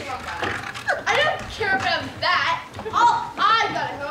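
Young actors' voices speaking lines on stage, not clear enough to make out.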